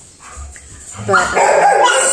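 A dog whining, starting about a second in.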